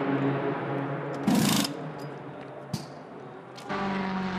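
Pit-lane sound at a GT race car's pit stop: a steady engine hum, then a short loud burst of hissing noise about a second and a half in and a single sharp click a little later. Near the end a race car's engine takes over with a steady pitched tone.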